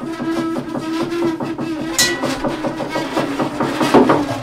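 Two double basses in free improvisation: a bowed note held steadily for about two seconds, then a sharp struck hit with a brief ringing tone about halfway through, and another hit near the end.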